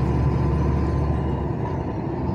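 Steady low drone of a truck's engine and tyres on the road, heard inside the cab while driving.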